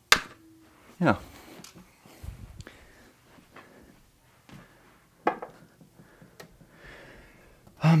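A sharp click at the very start, then a few faint scattered clicks and knocks from handling as the camera is picked up and moved.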